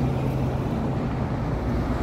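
Steady low rumble of vehicle engines, with a low hum that stops under a second in.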